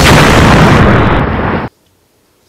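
Loud rumbling, explosion-like intro sound effect whose high end thins out about a second in before it cuts off suddenly.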